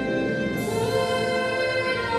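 Singing with musical accompaniment: long held notes that shift to a new pitch about half a second in.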